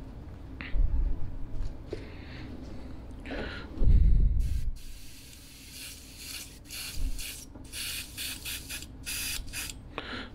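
Airbrush spraying in a run of short, quick spurts through the second half, about two or three a second, while the brush is thought to have a clog. Earlier come a few dull handling thumps.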